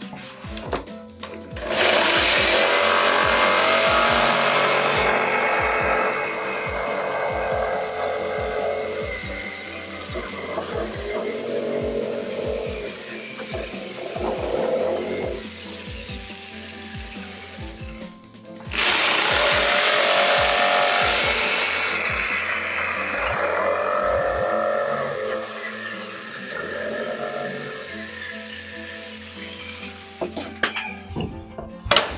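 A power tool's motor running in two spells of several seconds each, starting suddenly about two seconds in and again past the middle, its hiss trailing off each time, over background music.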